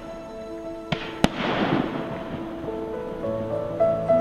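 Two sharp firework bangs about a second in, the second the louder, then a fading crackle, over music with held notes. Low bass notes come in near the end.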